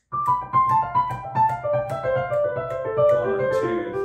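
Digital piano playing a fast run of descending triplets, the notes stepping steadily down in pitch. A metronome clicks evenly, about three times a second.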